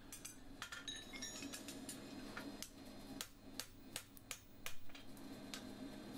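Hand hammer tapping a pritchel through the nail holes of a steel horseshoe on the anvil, punching out the holes marked by the stamp: a dozen or so light, sharp metal knocks at an uneven pace.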